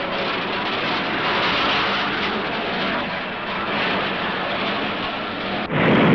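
Steady rumbling noise of a tram running through city street traffic. Near the end it shifts abruptly to a louder, deeper rumble.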